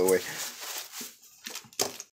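Thin plastic zip-lock bag crinkling as a bagged die-cast toy truck is picked up and handled, with a few short crackles near the end.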